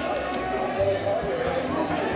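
Indistinct background voices with faint music, no clear non-speech sound standing out.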